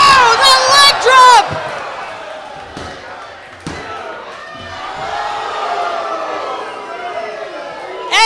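A loud shout in the first second and a half, then crowd noise in a large hall. Over it come a thud and a louder impact about three and a half seconds in, a wrestler landing from the top rope onto his opponent on the ring mat.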